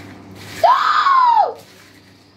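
A woman's single scream, just under a second long, rising in pitch and then falling away.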